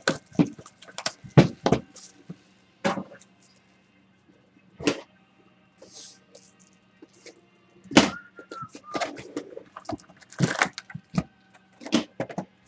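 Cardboard boxes of trading cards handled on a table: a string of separate knocks and thumps as a box is pulled from a stack, set down and picked up again.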